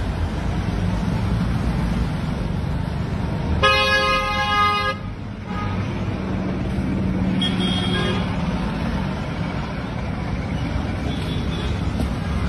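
Steady street traffic noise, with a vehicle horn sounding once for just over a second, about four seconds in.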